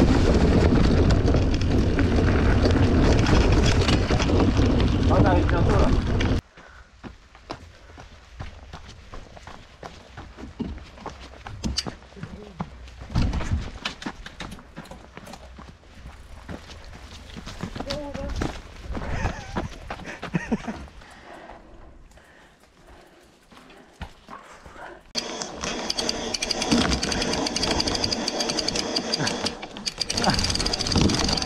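Mountain bike riding on a forest singletrack: loud rushing noise over the low-mounted camera's microphone for the first six seconds, then quieter rolling with scattered knocks of the tyres over dirt, roots and rocks, and loud riding noise again near the end. A laugh at the very start.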